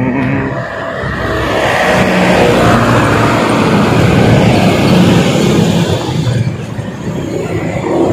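Road traffic passing close by: a light box truck drives past, its engine and tyre noise building to a peak about midway and then fading, with motorcycles passing as well.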